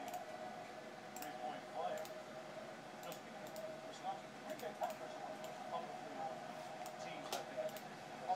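Scattered computer mouse clicks and keyboard keystrokes while text is selected, copied and pasted, over a faint steady hum.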